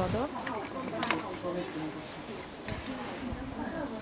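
Indistinct voices of several people talking in the background, with a few short sharp clicks about a second in and again near three seconds.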